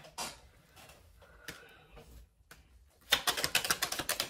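A tarot deck being shuffled: a rapid flutter of card clicks for about a second near the end, after a few quiet seconds.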